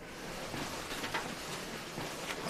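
Soft, steady rustling as a patient's clothing and neck collar are handled.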